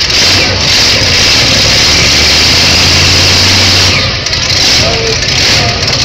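Modified pulling tractor's engine running loud and steady at the end of a pull, its note holding and then easing off about four seconds in. A voice is heard briefly near the end.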